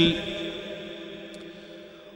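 A man's voice trailing off at the end of a phrase, its echo fading away over about two seconds into a faint background hiss.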